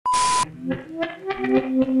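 Half a second of TV static with a steady high test-tone beep, cutting off suddenly, then a quiet phrase of held musical notes from a 'we'll be right back' transition effect.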